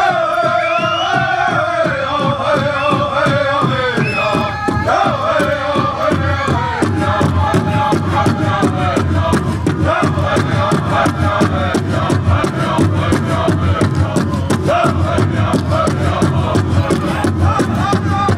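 A group singing a Native American 49 song together over a steady drumbeat; the singing grows fuller and heavier about seven seconds in.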